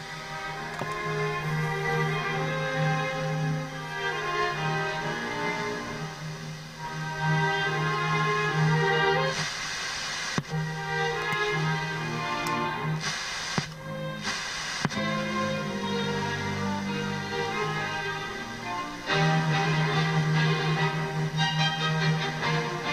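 Orchestral classical music from an FM broadcast playing through the loudspeaker of a 1970s Tandberg TP41 radio cassette. The radio is running on an LED and diode string standing in for its faulty stabistor, a listening test of the substitute. Brief bursts of noise break in around ten seconds in and again between thirteen and fifteen seconds.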